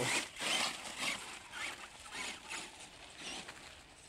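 Traxxas Stampede XL-5 RC truck's brushed electric motor and gears whining in throttle bursts, with tyres scrabbling on gravel. It grows fainter as the truck drives away.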